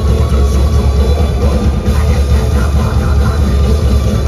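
Live metal band playing loud through a club PA, heard from the crowd: a heavy, bass-heavy wall of distorted guitars and bass over dense, fast drumming, without a break.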